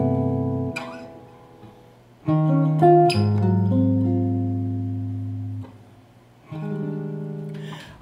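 Hollow-body archtop jazz guitar playing a few chords, each left to ring and fade, with short quiet gaps between them. A quick run of notes leads into a longer chord held through the middle.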